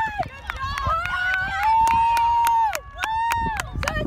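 Sideline spectators' voices shouting long, drawn-out calls, each held for about a second, with sharp clicks scattered throughout.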